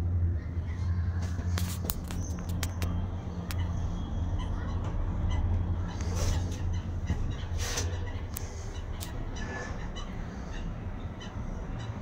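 Steady low hum inside a moving Emirates cable car gondola as it runs along the cable, with scattered light clicks and a few brief higher-pitched sounds in the middle.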